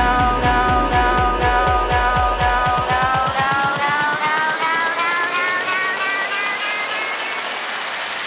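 Electronic dance music build-up in a Brazilian bass club track: a bass pulse that speeds up and then cuts out about three seconds in, under a synth chord that rises steadily in pitch, building toward the drop.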